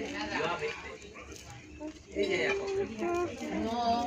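Indistinct voices talking, with a quieter pause in the middle.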